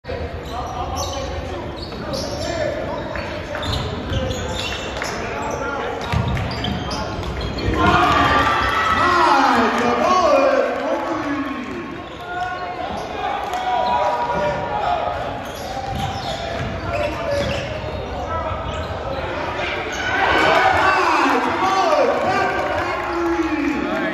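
Basketball being dribbled on a gym's hardwood floor, echoing in a large hall, with voices calling and shouting over it. The voices are loudest about eight to eleven seconds in and again near the end.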